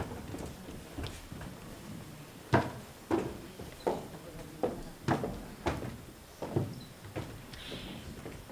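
Footsteps: several people's hard-soled shoes knocking on the stage floor as they walk up onto the stage, an irregular run of about nine knocks, roughly two a second, starting a couple of seconds in.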